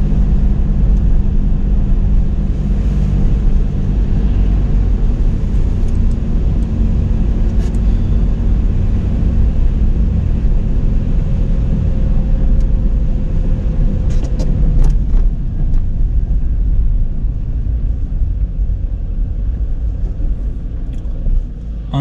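Car driving on a wet, snowy road, heard from inside the cabin: a steady engine and road rumble that eases off near the end as the car slows to a stop.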